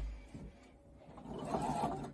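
Domestic sewing machine's motor hum dying away after a click right at the start, followed by quieter sounds of bulky polar fleece being handled and pushed into the machine near the end.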